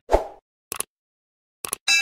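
A short plop just after the start, then two pairs of faint clicks and a brief high-pitched blip at the very end, with dead silence in between: edited end-of-video sound effects.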